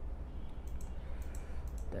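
A series of light computer mouse clicks, about half a dozen spread through the second half, as images are selected and resized on screen. A steady low electrical hum runs underneath.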